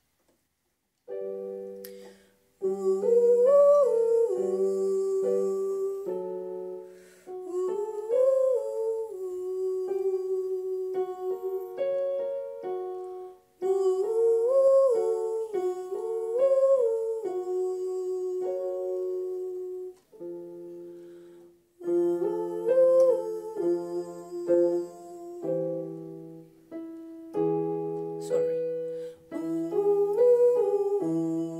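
A woman sings a vocal warm-up exercise on an 'ooh' vowel: short runs of notes that rise and fall, over sustained electronic keyboard chords. The pattern repeats several times, each time a little lower, as the exercise steps back down the scale.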